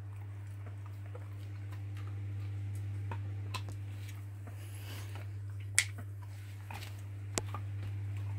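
A steady low hum, with scattered small clicks and smacks from a dog taking and eating a hand-fed morsel; two sharp clicks stand out in the second half.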